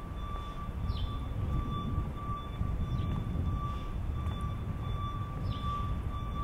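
City street ambience: a steady low rumble with a constant high-pitched whine over it, and a few short chirps.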